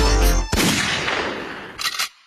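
A hip-hop beat stops about half a second in on a sudden loud bang, whose noisy wash slowly fades away. A short second burst comes near the end before the sound cuts off.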